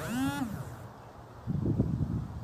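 A short pitched call that rises and then falls in pitch, lasting under a second, opens with a click. From about halfway through, wind buffets the microphone in low gusts.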